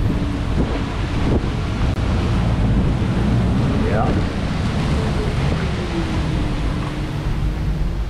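Strong storm wind gusting over the microphone in a steady rumble, with driving rain and wind-whipped chop on the water.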